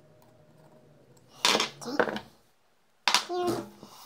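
Two short bursts of a man's voice, about a second and a half apart, after a quiet start with only a faint hum.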